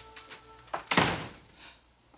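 A door shutting with one heavy thud about a second in, over soft sustained background music that fades out just before it.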